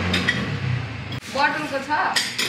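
Speech: a man's voice talking to a waitress, asking for water.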